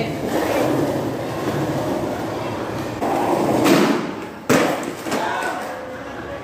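Skateboard wheels rolling on a concrete floor, then a single hard clack of the board hitting the ground a little past the middle.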